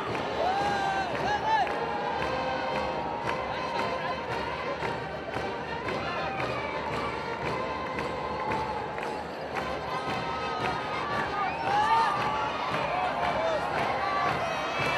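Large stadium crowd cheering: a steady din of many voices with scattered individual shouts rising out of it.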